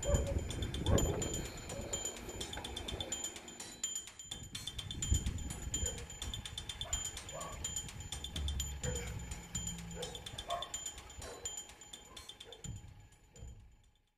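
Dogs barking at a distance at intervals, over a high, rapidly pulsing chirp and a low rumble; the sound fades out at the end.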